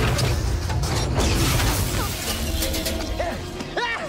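Action-film battle soundtrack: music under a dense mix of crashes and metallic mechanical clanking and whirring, with two short whines that rise and fall in pitch near the end.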